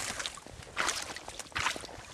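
Big sea trout thrashing in shallow water over gravel, its tail slapping and splashing in a few short bursts.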